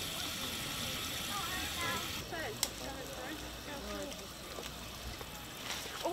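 Water running from a park drinking fountain into bottles held under the spout, a steady hiss that stops abruptly about two seconds in. Voices of people chatting around the fountain can be heard, and there is a single click shortly after the water stops.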